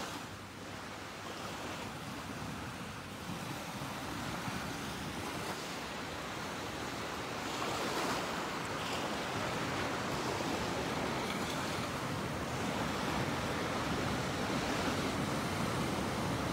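Small waves breaking and washing up a sandy shore: a steady surf wash that swells a little about halfway through.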